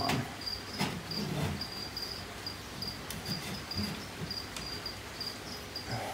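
A cricket chirping steadily in short, high pulses, about two to three a second. Under it come a few sharp clicks and some rustling as a wooden branch perch is handled against the terrarium.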